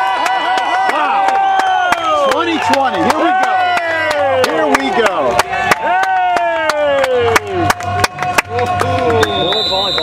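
Music with many overlapping tones that keep sliding down in pitch over a held note, cut through by sharp clicks.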